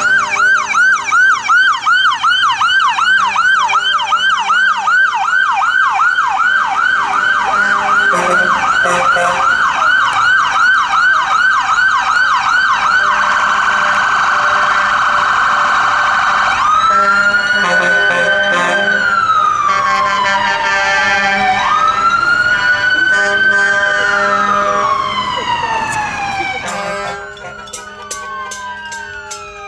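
Electronic emergency-vehicle siren on yelp, rising and falling about three times a second, then switching to a much faster warble for a few seconds and then to a slow wail that rises and falls twice. The level drops off suddenly near the end.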